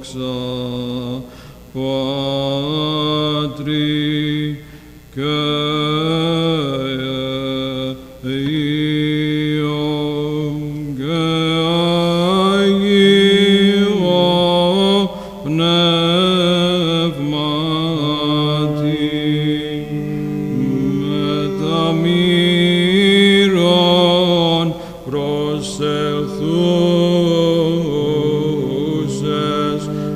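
Byzantine chant sung by male chanters: a melismatic melody in long phrases with short breaths between them, over a low held note.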